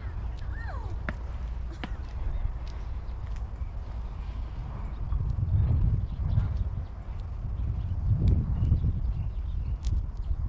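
Wind rumbling on the microphone in an open field, gusting harder about halfway through and again near the end, with faint distant voices.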